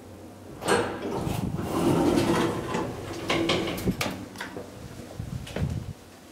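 KONE hydraulic elevator's sliding car doors opening with a motor hum, followed by several sharp door clicks and knocks.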